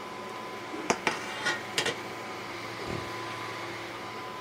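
A few light clicks and knocks of small metal pieces being handled, as an aluminum angle is set aside and a small chrome wrench picked up, between about one and two seconds in. A steady background hum continues underneath.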